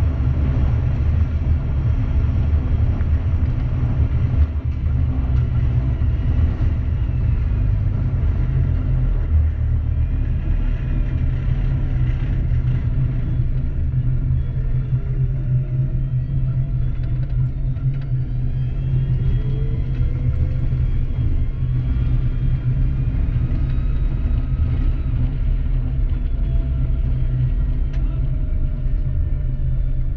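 Tank engine running steadily with the vehicle standing still, a loud low rumble close to the turret, with faint whines rising and falling in pitch through the middle and later part.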